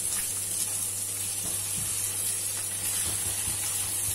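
An egg frying in hot oil in a nonstick pan, sizzling steadily while a spatula breaks it up and stirs it, with a few soft scrapes. A low steady hum sits underneath.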